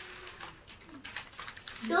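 Newspaper pages rustling and crackling as a broadsheet is turned and opened out.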